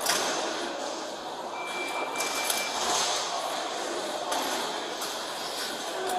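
Steady background noise of a large atrium lobby, with one electronic beep lasting about a second, about a second and a half in, and a few faint clicks.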